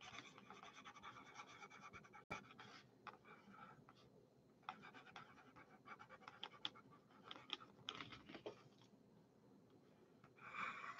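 Near silence, broken by faint, scattered scratches and small clicks, a little busier in the second half, from small things being handled at a desk.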